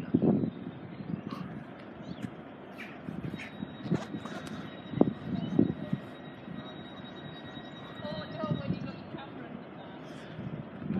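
Class 321 electric multiple unit drawing slowly into the station, with a thin steady high whine from about three seconds in to near the end. Scattered short knocks and thumps from the camera being handled sit over it.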